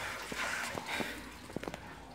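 A few faint, irregular knocks and scuffs of a person clambering up a ladder through a concrete opening, hands and body bumping the edge.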